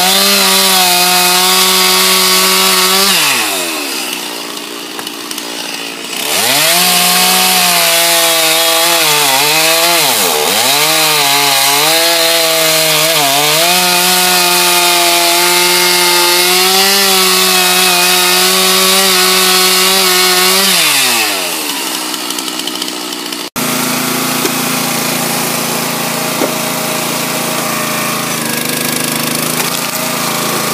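Chainsaw cutting through a pine log into firewood rounds, its pitch rising and dipping under load, easing to idle about three seconds in and again about twenty-one seconds in. After an abrupt change about 23 seconds in, a log splitter's small engine runs steadily.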